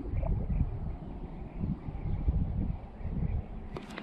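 Wind buffeting the microphone, a low, uneven rumble that rises and falls.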